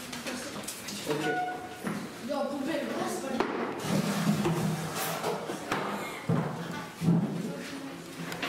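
Indistinct talking of several people in a changing room, with a couple of short knocks near the end.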